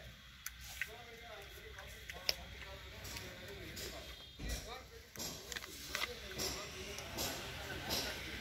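Faint, indistinct voices of people talking, with scattered small clicks and knocks.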